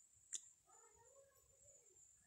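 Near silence, with one sharp click about a third of a second in, then a faint drawn-out animal call that rises and falls in pitch for about a second.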